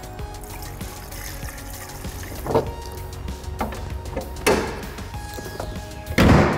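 Background music over fluid being poured from a plastic jug into an engine-bay reservoir. Three sharp knocks about a second apart fall in the middle.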